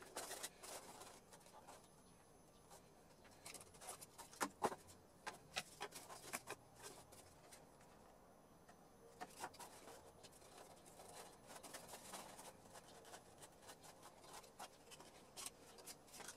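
Faint, scattered clicks, taps and light scraping of stiff white panels being handled and slotted together by hand on a cutting mat. A few sharper knocks come about four to five seconds in.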